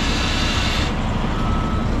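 Diesel engines running steadily: a semi truck idling close by and a telehandler working alongside. A higher hiss cuts off about a second in.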